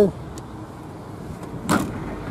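Rear tailgate of a Mazda estate car being shut, with one sharp slam near the end.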